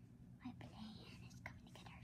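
Near silence with faint whispering.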